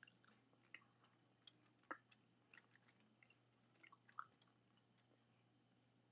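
Faint, scattered mouth clicks and smacks of a person chewing food slowly, with near silence between them.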